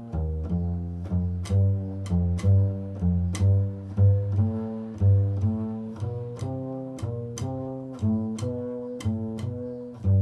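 Solo upright double bass played pizzicato: a steady line of plucked notes, about two a second, each ringing briefly and fading before the next.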